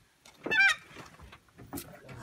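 A chicken clucks once, a short loud call about half a second in. A faint click follows near the end.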